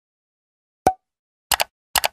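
End-card animation sound effects: a single short pop about a second in, then two quick double clicks like a mouse button, as the Like, Share and Subscribe buttons appear.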